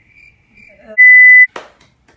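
A single loud, steady, high electronic beep lasting about half a second, followed right after by a short knock.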